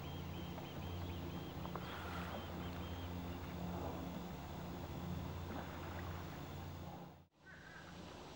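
A steady low hum, like a distant motor, runs under faint outdoor water sound. It drops out briefly near the end and then goes on more quietly.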